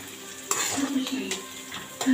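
Sliced onions sizzling in hot oil in a kadhai while a metal spatula stirs them, scraping and clinking against the pan a few times, the sharpest about half a second in.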